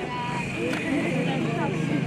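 Several people talking at once, with a steady low engine-like hum underneath.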